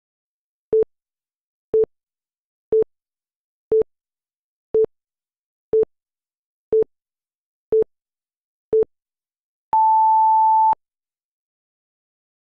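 Countdown timer sound effect: nine short beeps, one a second, then one longer, higher beep marking the end of the count.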